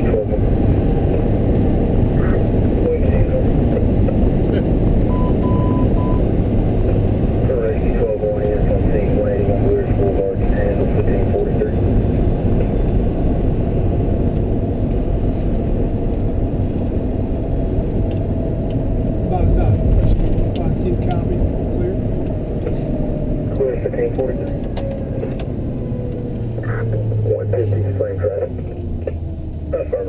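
Cab noise inside a 2005 Chevrolet C4500 ambulance at highway speed: a steady rumble of its Duramax diesel engine and the road. Near the end the engine note falls steadily in pitch as the ambulance slows.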